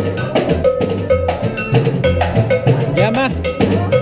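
Live dance music: a drummer's cowbell and snare keep a brisk, steady beat, about three strikes a second, over a stepping bass line and a repeated melody note.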